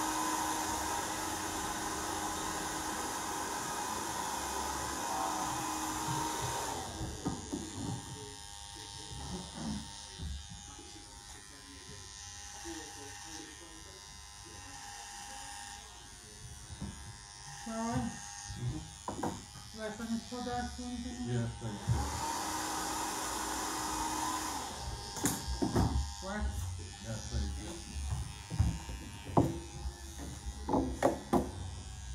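Corded electric beard trimmer buzzing steadily as it cuts a beard, for about the first seven seconds. It switches off, then runs again for a few seconds just past the two-thirds mark.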